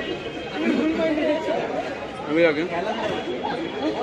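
Several people talking at once: background chatter of voices, with one voice louder about two and a half seconds in.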